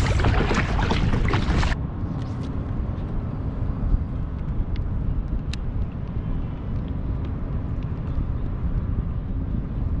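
Kayak paddle strokes splashing in choppy water, with wind on the microphone; this stops abruptly about two seconds in. After that comes a steady low wind rumble on the microphone with a couple of faint clicks.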